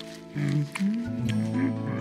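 A cartoon baby stegosaurus voicing wordless grunts and moans over background music, starting about a third of a second in and sliding up and down in pitch.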